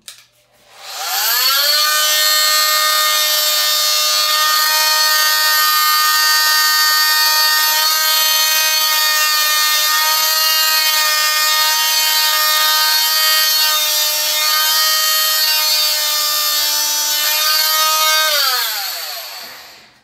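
Electric cast saw spinning up, then running with a loud, steady whine as it cuts open a lightweight plastic MagicCast forearm cast; its pitch falls as it winds down near the end.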